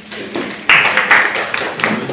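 Hand clapping from a small group, starting suddenly about two-thirds of a second in and loud.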